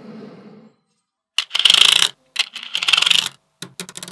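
Small magnetic balls clicking and rattling against each other as hands press a slab of them into place on a magnet-ball model. A soft rubbing fades out at first, then come two dense runs of rapid clicks, each about a second long, and a few separate clicks near the end.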